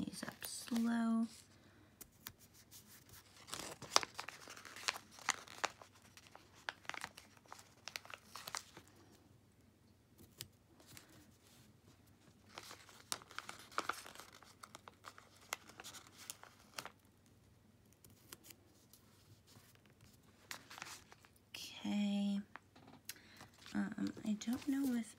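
Thin, papery stickers being peeled off a plastic-feeling sticker sheet, with irregular crinkling and rustling of the sheet and small taps as they are pressed onto a planner page. A short hum is heard about a second in and again near the end.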